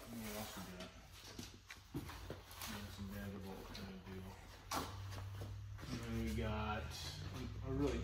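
Indistinct, low-level male talk in a small workshop room, with one sharp knock about halfway through.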